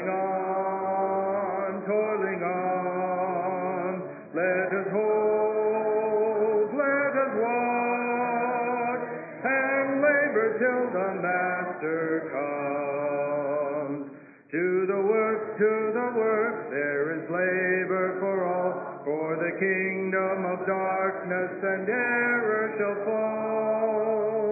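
Congregation singing a hymn a cappella, a man's voice leading, in long held notes. The singing breaks briefly for breath about four seconds in and again about fourteen seconds in.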